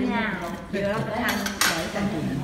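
Metal spoons and cutlery clinking against plates and bowls during a meal at the table, with a few sharp clinks about a second and a half in.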